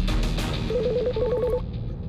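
Electronic telephone ringtone: a rapid warbling trill of short beeps, starting under a second in and lasting about a second, as a call comes in. Background music fades out under it.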